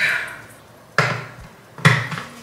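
Three sharp knocks, about a second apart, each dying away quickly.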